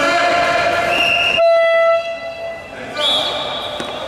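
A horn blasts once, suddenly, for about half a second: a steady, buzzer-like tone that then fades away, after some voices.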